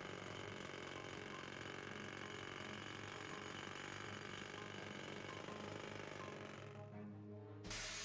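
Cartoon sound effect of a pneumatic jackhammer hammering into rock: a dense, steady rattle that stops about seven seconds in, followed by a short burst of noise just before the end.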